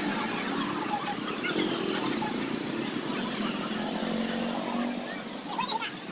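A few light metallic clicks from small bicycle brake parts being handled and fitted: two close together about a second in, one at about two seconds and a couple near four seconds. Underneath is a steady background of street traffic and faint distant voices.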